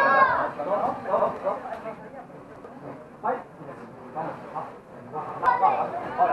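Voices calling out in a boxing gym, loudest at the start and again near the end. A few short sharp knocks come through the quieter middle, with a crisp one about five and a half seconds in.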